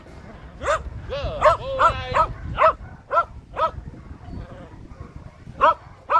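A dog barking in a quick run of short, high barks through the first few seconds, then a pause and one more bark near the end.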